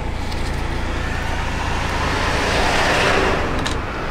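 A car passing on the road, its tyre and engine noise swelling to loudest about three seconds in and then fading, over a steady low rumble.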